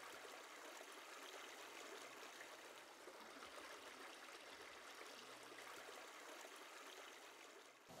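Faint, steady trickle of a small creek flowing.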